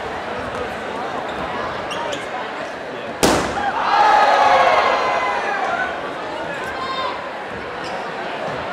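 A balloon bursting under a stomping foot about three seconds in, one sharp bang, followed by the crowd shouting and cheering louder for a couple of seconds over steady crowd noise.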